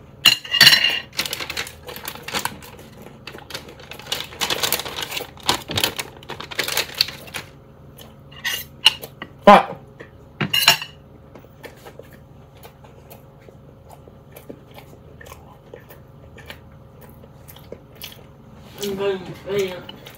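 Metal cutlery clicking and scraping against a plate as a toasted sandwich is cut and eaten, irregular and busiest in the first half, with two sharp clinks about nine and a half and ten and a half seconds in.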